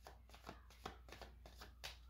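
Faint rustling and light flicks of tarot cards being handled in the hand, a series of soft card snaps spread over the two seconds.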